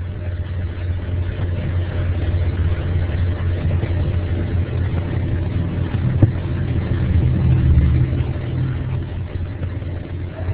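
Steady low rumbling background noise through a microphone, swelling a little about eight seconds in, with one sharp click about six seconds in.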